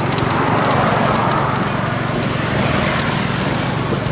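Tuk-tuk's engine running steadily as it drives along a road, with road and wind noise.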